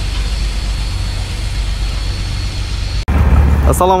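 Engine running steadily with a low rumble. About three seconds in the sound cuts abruptly, and a louder low hum follows, with a man's voice near the end.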